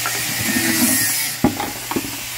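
Plastic paint bucket being handled on a concrete floor, with rubbing and a sharp knock about one and a half seconds in and a smaller knock just before the end, over a steady hiss.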